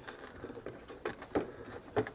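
Small metal clicks as spring clips are worked loose from a VW Beetle headlight housing: a few sharp clicks, the loudest near the end.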